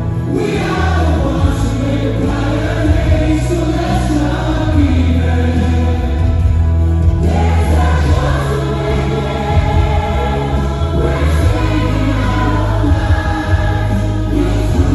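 A large group of adult singers and children singing together into microphones, amplified live over music with a heavy, steady bass.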